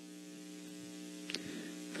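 Steady electrical hum, with one brief click a little over a second in.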